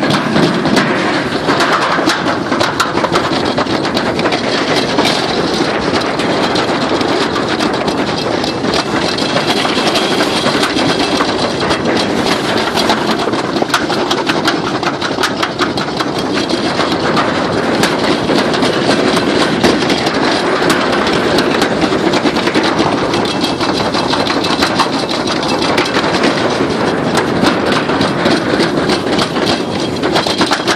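A toboggan sled running fast down a metal slide trough: a loud, steady rolling rumble with a dense, rapid rattle of the sled against the metal.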